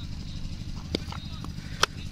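Cricket bat hitting a tennis ball: one sharp crack near the end, over faint outdoor background noise, with a fainter knock about a second in.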